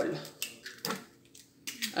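A woman's speech trailing off, a light click or two, then a brief quiet pause before her voice comes back.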